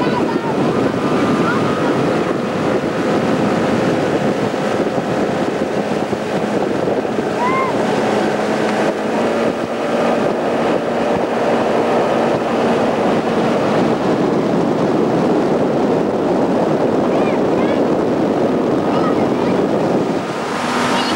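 Motorboat engine running steadily at towing speed, heard under heavy wind buffeting on the microphone and the rushing of water and spray.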